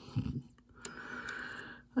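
A short low grunt-like vocal sound, then a few faint light clicks of a metal pick against solder pins on a circuit board, over a faint steady hiss.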